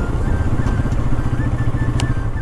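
Bajaj Pulsar NS200's single-cylinder engine running steadily at low speed.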